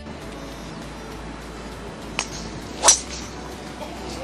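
Driver striking a golf ball off the tee: one sharp, loud crack nearly three seconds in. A fainter click comes under a second before it, over a steady outdoor background hiss.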